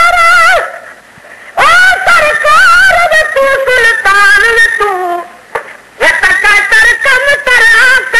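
Male voice singing a Sindhi devotional naat (molood) in long held, ornamented notes with wavering pitch, with two short breaks between phrases.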